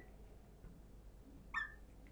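Marker drawing on a glass lightboard, with one short rising squeak about one and a half seconds in against faint room tone.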